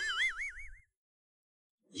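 Cartoon-style comedy sound effect: a high, whistle-like tone wobbling rapidly up and down in pitch for under a second, then cutting off into dead silence.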